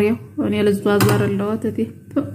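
Speech only: a person talking, with no other clear sound.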